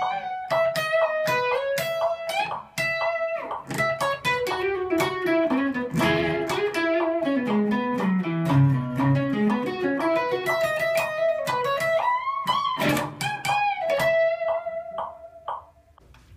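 SG-style solid-body electric guitar playing a lead solo at 120 BPM, mostly in C-sharp minor pentatonic. Quick single-note phrases, with a run that descends to low notes about halfway through and climbs back up. The playing fades out near the end.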